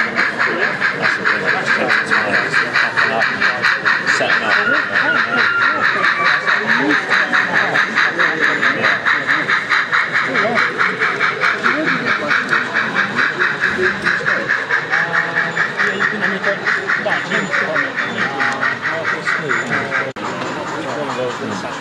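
Sound-equipped model steam locomotive chuffing steadily at about four beats a second as it runs slowly, with exhibition-hall chatter underneath.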